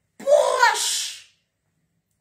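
A woman's breathy, drawn-out exclamation, "ya", about a second long, its pitch rising and then falling.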